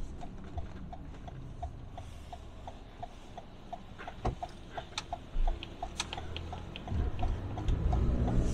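Car turn-signal indicator clicking evenly, about three clicks a second, over low road and engine rumble heard from inside the cabin. The rumble grows louder near the end, and a few sharper clicks stand out in the middle.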